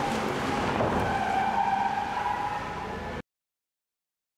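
Car engine revving as the car drives past, over a dense, steady rumble. A sustained engine tone rises out of it about a second in. All sound cuts off suddenly a little after three seconds.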